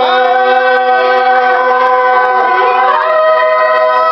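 Choir singing a hymn a cappella in parts, holding long sustained chords, with a move to a new chord about three seconds in.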